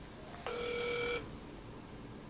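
A telephone ringing: one short electronic ring of under a second, starting about half a second in, as an outgoing call rings through.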